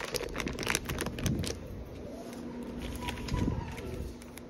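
Plastic poly mailer crinkling and tearing as it is opened by hand: a rapid run of crackles in the first second and a half, then quieter rustling as the paper contents are drawn out.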